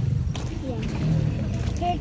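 Quiet talking over a steady low rumble, with a few soft footsteps in wet mud.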